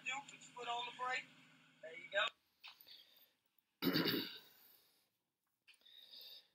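Voices on a phone recording inside a school bus over the steady low hum of the bus's idling engine, both cutting off suddenly about two seconds in. About four seconds in, a man gives a short throat-clear.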